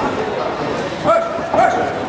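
Spectator chatter in a large hall, with two short high-pitched calls about a second in, half a second apart.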